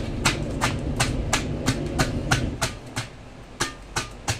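A wide cleaver-like knife scraping the scales off a large fish, in quick strokes about three a second, each a sharp scrape. A low rumble underneath dies away about two-thirds of the way through.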